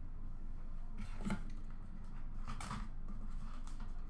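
Faint clicks and taps of hard plastic card holders and a cardboard card box being handled, a few scattered clicks over a low steady hum.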